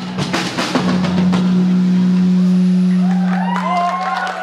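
Live rock band ending a song: drum hits for the first second or so, then a final low note held and left ringing. Whistles from the audience start near the end.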